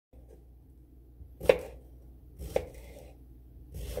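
Kitchen knife slicing through a cucumber onto a wooden cutting board: two sharp cuts about a second apart, the first the loudest, with a third cut starting near the end.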